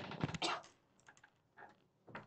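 A quick run of clicks and taps, like typing, packed into the first half-second or so, then a few faint ticks.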